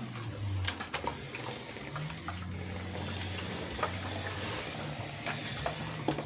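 A low steady hum with faint rustling and a few light knocks as a clothes iron is worked over folded cloth.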